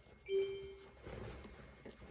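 A brief steady hum lasting about half a second, then faint rustling of cotton fabric being handled and turned over.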